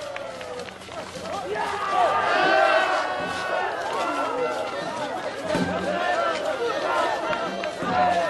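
Several voices talking and calling over one another at once: crowd chatter.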